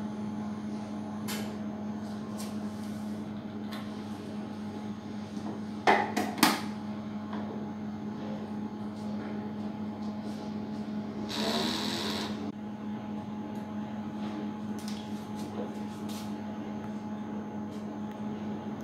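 A steady low electrical hum, with a few sharp knocks from handling things on the bench around six seconds in and a short hiss about eleven seconds in.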